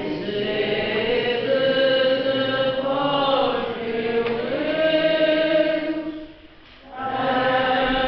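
Church singing of a slow liturgical chant, most likely the responsorial psalm after the first reading. Long held notes move slowly in pitch, with a brief break a little past six seconds before the next phrase.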